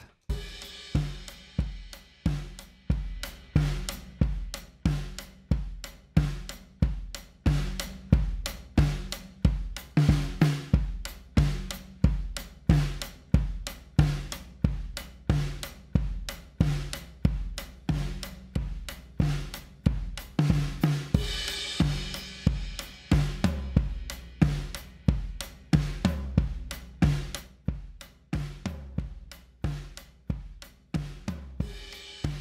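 An acoustic drum kit recorded with only a kick mic and two overheads plays back a steady groove of kick, snare, hi-hat and cymbals, mixed with an aggressive parallel compressor. About two-thirds of the way through, a brighter cymbal wash comes in.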